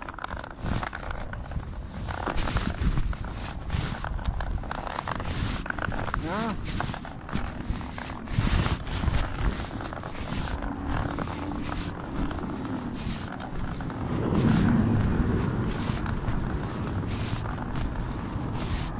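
Muffled handling noise from a covered phone microphone: repeated rustles and knocks of fabric rubbing against it, with faint indistinct voices now and then and a louder low rumble about fourteen seconds in.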